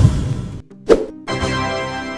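Cartoon sound effects and music: a brief rushing noise fades out at the start, a short pop comes about a second in, then steady music follows.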